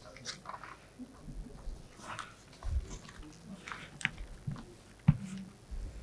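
Quiet hall sounds picked up by the podium microphones: brief faint murmured voices and scattered small clicks and rustles of handling. One sharp knock about five seconds in is the loudest sound.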